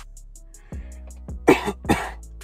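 A man coughs twice in quick succession about one and a half seconds in, coughing from smoking in a closed car, over background music with a beat.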